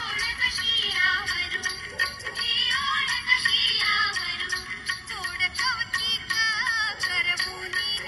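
A Marathi Ganpati devotional song playing: a high-pitched voice sings a winding melody over steady percussion strikes, with little bass.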